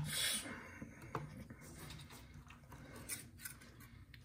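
Faint handling noise as an open folding knife and a stainless steel kitchen scale are picked up and moved by hand: soft rubbing and scraping, with faint clicks about a second in and again about three seconds in.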